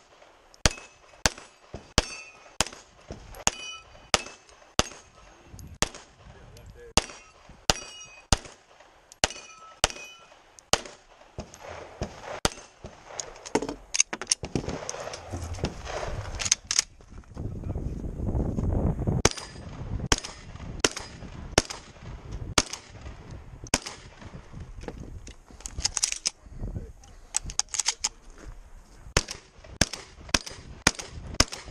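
A quick string of pistol shots, about two a second, many followed by the ringing of struck steel targets. After a pause of several seconds filled with handling noise, a shotgun fires a steady series of shots.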